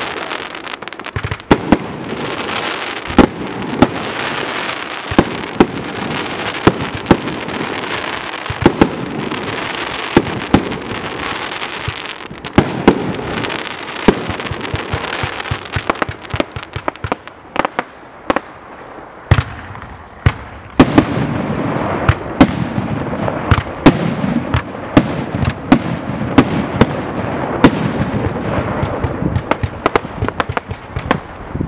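Lynch Imports 84-shot "Kingdom Come" fireworks cake firing its alternating brocade and zipper-crossette shots: sharp launch reports and breaks, one or two a second, over a steady hiss. The hiss thins briefly a little past halfway, then comes back stronger.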